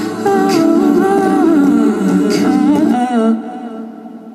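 Layered wordless female vocals, humming harmonies built up on a TC-Helicon loop pedal and played back through a PA speaker, with a sharp percussive hit about every two seconds. The loop cuts out a little past three seconds in and the sound fades away.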